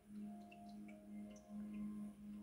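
A faint, steady low hum-like tone with fainter higher tones above it. It comes in suddenly and swells and dips in loudness.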